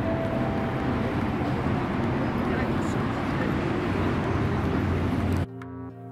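Steady outdoor city street ambience: a wash of traffic noise and people's voices. About five and a half seconds in it cuts off abruptly, giving way to electronic music with sustained synth tones over a regular beat.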